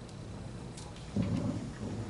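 Room tone of a meeting hall with a steady low hum, then a low rumble that starts suddenly about a second in.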